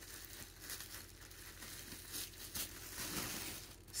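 Faint rustling and crinkling of packaging being handled while a tie on it is undone, with a few sharper crinkles along the way.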